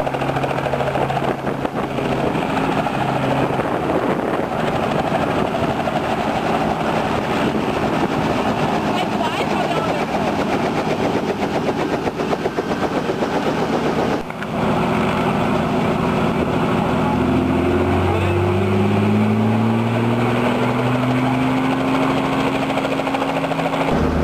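Helicopter running on the pad with its main rotor turning, a fast steady chop close by. About halfway through the sound cuts and changes, and in the second half the engine and rotor sound rises steadily in pitch as they spool up.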